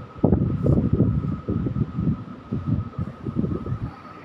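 Chu-Kuang Express train running into the station, its wheels rumbling and clattering unevenly on the rails, with a faint steady high tone over it.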